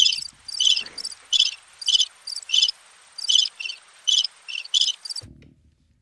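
Crickets-chirping sound effect: a string of short, high chirps, about two and a half a second, that cuts off abruptly about five seconds in. It is the stock gag for a joke met with awkward silence, played here after a pun.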